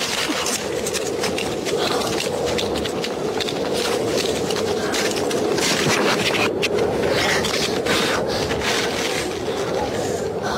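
Ice skate blades scraping and cutting across natural ice in a quick run of irregular strokes, over a steady rushing noise.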